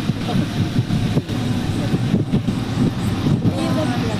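Indistinct voices talking over a steady, dense outdoor noise.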